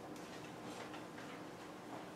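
Faint scratchy strokes of a dry-erase marker writing on a whiteboard, a short stroke every half second or so.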